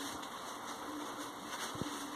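Faint rustle of crepe paper being folded by hand, over a quiet steady hum, with a soft knock near the end.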